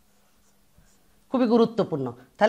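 Faint scratching of a marker pen writing on a whiteboard, then a woman's voice starts speaking a little past the middle and is the loudest sound.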